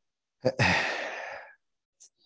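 A man's sigh, a long breathy exhale close to the microphone, starting about half a second in and fading away over about a second.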